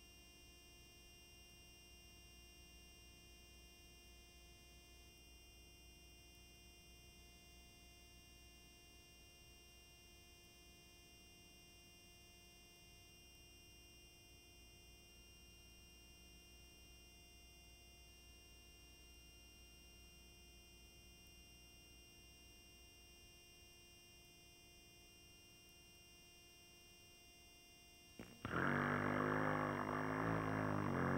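Faint steady hum with no other sound, then about two seconds before the end a much louder sound with several shifting pitches cuts in abruptly.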